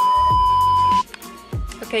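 A loud, steady test-tone beep, the kind that goes with colour bars, lasting about a second and cutting off suddenly, followed by background music with a beat.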